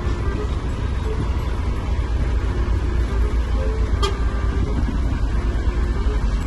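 Ford truck's diesel engine running, heard from inside the cab as a steady low rumble, with a brief click about four seconds in.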